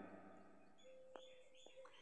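Near silence, with a few faint high bird chirps in the background and two faint ticks.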